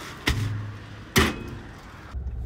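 Two knocks about a second apart at a parcel locker: a lighter one as the parcel goes into the compartment, then a louder slam as the compartment's metal door is pushed shut.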